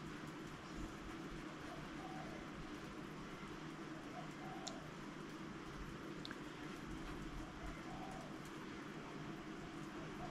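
Faint soft scratching and dabbing of a small paintbrush working thick gouache into paper, with a couple of tiny ticks, over a steady low room hum.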